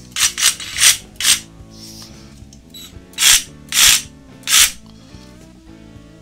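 DeWalt DCS380 20V MAX cordless reciprocating saw with no blade fitted, run in short trigger blips: four quick bursts in the first second and a half, then three more a little over half a second apart from about three seconds in. Background music plays underneath.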